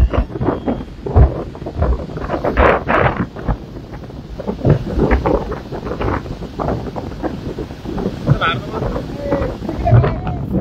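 Wind buffeting the microphone of a phone filming from a moving vehicle, a rough, uneven rush strongest in the low end, with people's voices calling out over it and a short pitched call about eight seconds in.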